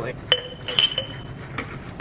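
Glass shot glass clinking against the drip tray of a small espresso machine. One sharp clink comes about a third of a second in and rings briefly, and a lighter second clink follows about half a second later.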